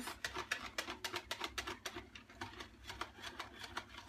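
Hand whisk beating Yorkshire pudding batter in a plastic jug: rapid, regular clicking taps of the whisk against the jug, several a second, growing fainter and sparser in the second half as the batter turns smooth.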